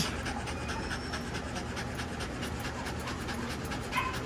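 Scottish Terrier panting steadily with its tongue out.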